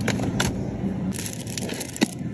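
Plastic packaging of vacuum-sealed salmon fillets being handled: sharp crinkles and clicks of the plastic film and black plastic trays, a couple near the start and a denser cluster after about a second.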